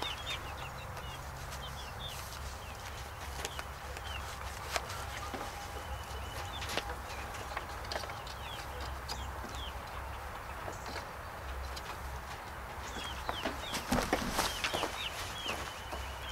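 Chickens clucking and birds chirping in the background, faint and scattered throughout, with a few sharp clicks and knocks as a garden hose and its spigot fittings are handled.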